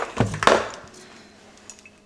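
Handling noise from a glass perfume bottle being lifted: a short knock and rustle about a quarter of a second in, fading within half a second.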